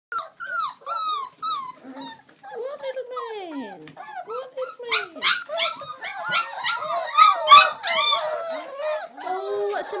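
Several Old English Sheepdog puppies whimpering and crying together, high-pitched calls that rise and fall. Early on single short cries come about twice a second, with one long falling cry; from about halfway the cries overlap in a busier chorus, loudest near three-quarters through.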